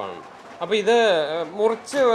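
A man's voice speaking, starting after a short lull of about half a second.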